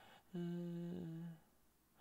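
A man humming one steady note for about a second, dropping slightly in pitch near its end.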